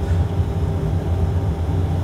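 Steady low drone of the PC-12 NG simulator's reproduced turboprop engine and propeller sound, at a reduced cruise power setting of about 15 PSI torque.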